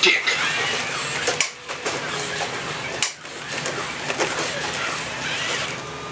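Robosapien RS Media toy robots walking: the steady whir of their small gear motors, with a few sharp clicks and taps from their moving limbs and feet.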